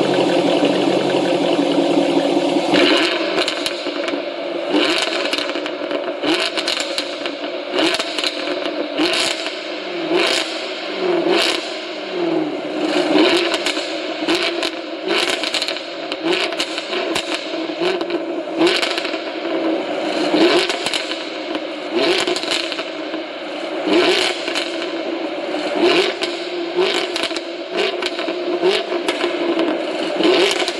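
Jaguar F-Type V8 exhaust. It is held steady at high revs for about three seconds. It is then blipped over and over, each rev falling back with loud crackles and pops from the exhaust on the overrun. The sound echoes off the concrete walls of an enclosed garage.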